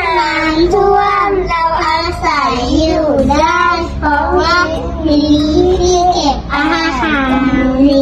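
A child singing a melody, with notes held and bending in pitch, over a steady low hum.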